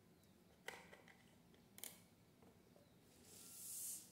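Near silence with two light knocks about a second apart: a milk carton being capped and set down on a table. A soft hiss swells near the end.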